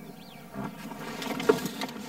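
A vehicle's engine running at low revs, heard as a low rumble from inside the cab. It comes up about half a second in, with a few light knocks.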